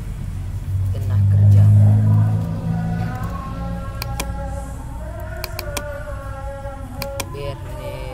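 A loud low rumble swells about a second in and fades after another second or so. Faint music with held notes follows, and a handful of sharp computer mouse clicks fall in the second half.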